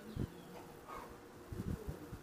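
A faint steady buzzing hum with a few soft low thumps, one just after the start and a cluster near the end.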